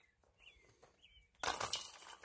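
Near silence, then about one and a half seconds in, flying discs hit the hanging metal chains of a disc golf basket: a sudden, loud rattle of chain links that keeps ringing.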